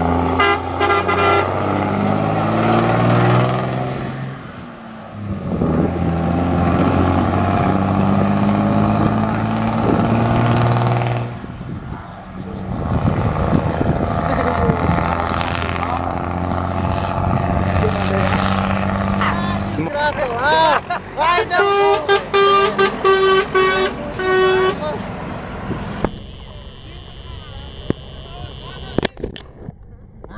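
Heavy truck passing on the highway, sounding its horn in long held blasts over its running diesel engine.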